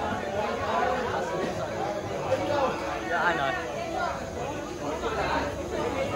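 Many people talking at once: overlapping chatter of a crowd gathered around a table, with no single voice standing out.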